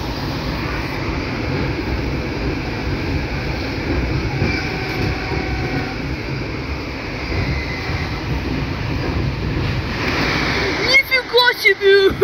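Steady low rumble and rattle of a moving electric commuter train, heard from inside the carriage. Near the end a person bursts into loud laughter, several quick bursts that are louder than the train.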